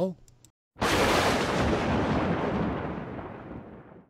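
An explosion sound effect: a sudden boom of noise that fades away over about three seconds and then cuts off abruptly.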